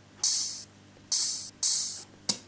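Three hi-hat hits from GarageBand's House Drum Machine, each a short high hiss fading over about half a second, at uneven intervals as the steps are tapped into the drum pattern.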